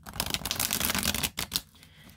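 A deck of tarot cards being shuffled by hand: a quick, dense run of cards slapping and sliding against each other for about a second and a half, then a couple of short flicks before it stops.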